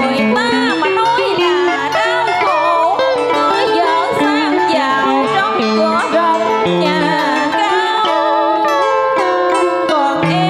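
Music for a Vietnamese love-song duet playing loud and steady over a sound system, its melody full of pitch bends and vibrato.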